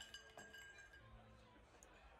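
Near silence, with a few faint ringing tones that fade out about a second in.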